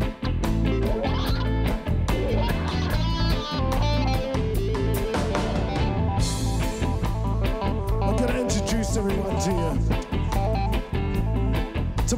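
Live reggae band playing, with electric guitar prominent over a steady bass line and drums.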